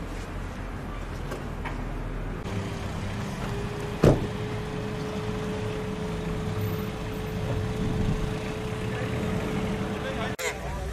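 Outdoor road traffic noise, a steady low rumble, with a steady hum coming in about two and a half seconds in. A single sharp knock about four seconds in is the loudest sound.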